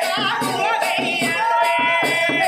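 A folk song sung live with a wavering, ornamented voice over steady percussion beats about three a second, ending on a long held note.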